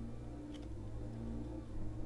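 Faint handling of a stack of glossy trading cards, one card slid off the front of the stack, with a single soft click about half a second in.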